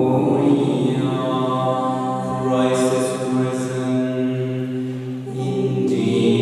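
A small mixed vocal ensemble, a man's voice and women's voices, singing sacred music a cappella in harmony, holding long sustained chords with a few soft sung consonants. The chord eases off briefly about five seconds in and the voices swell again at the end.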